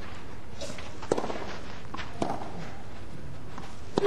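Tennis ball struck by rackets during a rally: sharp single pops about a second in, about two seconds in and again at the end, over a steady low background of the crowd and court.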